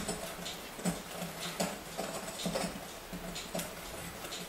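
A whisk stirring dry flour in a glass bowl: soft taps and scrapes against the glass, irregularly spaced about once a second.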